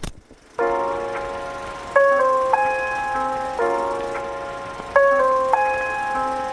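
Podcast intro theme music: a short sharp hit, then a sustained melodic tune in held chords that change about every second and a half.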